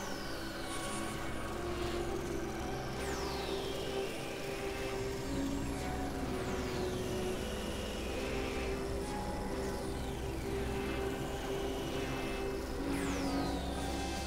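Experimental electronic synthesizer drone music: a steady low drone under held mid-range tones, with high pitch swoops falling steeply and recurring every two to three seconds.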